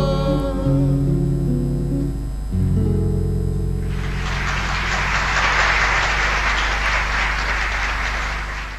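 Acoustic guitar playing the closing notes of a folk song, with a fresh chord struck about two and a half seconds in. From about four seconds in, applause takes over.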